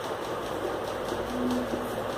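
Marker pen writing on a whiteboard, with faint short scratching strokes over a steady background hiss.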